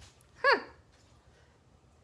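A woman's short, falling "huh" about half a second in, then quiet room tone.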